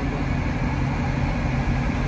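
Steady engine and road noise heard inside the cabin of a moving vehicle, a continuous low rumble.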